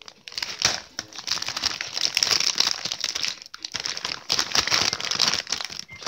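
A plastic bag of Flamin' Hot Crunchy Cheetos crinkling as it is handled close to the microphone: a dense run of crackles with a couple of brief lulls a little past halfway.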